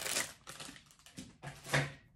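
Plastic bag crinkling and rustling in the hands, with a few sharp clicks, and a brief hum of a woman's voice near the end.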